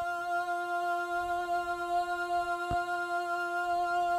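A sampled female voice from Soundiron's Voices of Gaia library in Kontakt holds one steady sung note, running through a chorus effect. There is a faint click partway through.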